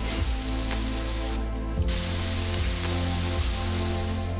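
Beef burger patty sizzling on a hot flat-top griddle, a dense hiss that breaks off briefly about a second and a half in, over background music with a low beat.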